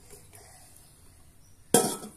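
One sharp metallic clank of a stainless steel pot and its lid near the end, ringing briefly before it dies away; before it only faint small knocks.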